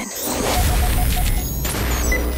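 Cinematic trailer sound design: a deep rumble that starts at once, under dense crackling noise with a few sharp hits and thin high sweeps rising slowly over it.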